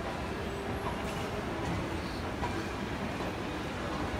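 Steady rumbling noise of a moving passenger train, heard from inside the carriage.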